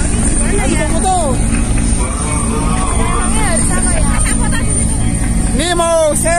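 Two military helicopters flying past low, their rotors and turbine engines making a steady low drone, with voices from the crowd over it.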